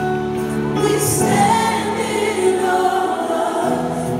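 Live gospel music: female lead singers with a choir, over steady held chords, heard from the audience in a large hall.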